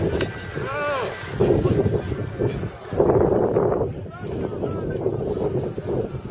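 Wind buffeting the microphone with an uneven low rumble, over spectators' voices and short calls around the arena.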